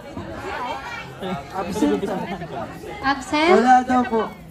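Voices and chatter from the audience in a cinema hall, with a louder voice speaking near the end.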